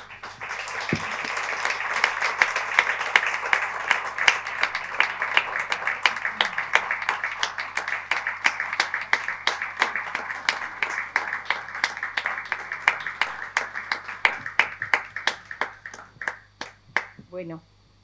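Audience applauding. The applause swells in the first two seconds, then slowly thins to scattered single claps and stops about a second before the end.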